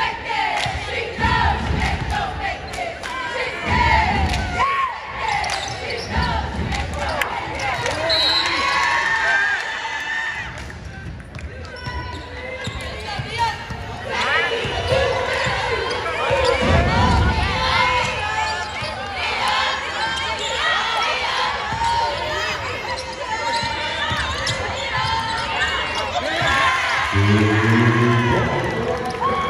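Basketball game sounds in a gym: a ball bouncing on the hardwood court with several thumps, under many overlapping voices calling and shouting from players and spectators.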